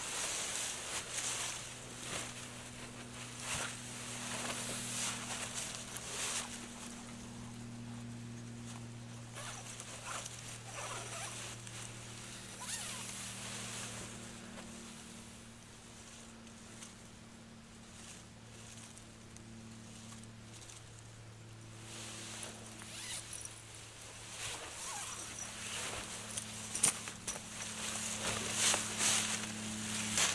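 Fabric rustling and a zipper on a hammock's mesh bug net as a person settles into the hammock, then moves about and climbs back out near the end, with dry leaves crackling underfoot. It goes quiet in the middle while he lies still. A low steady hum runs underneath.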